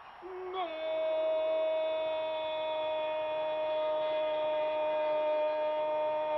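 A male football commentator's long held goal cry, a drawn-out 'gooool' shouted on one high note that sinks slightly in pitch, marking a converted penalty. It begins with a quick breath and a short lower note, then holds for about six seconds.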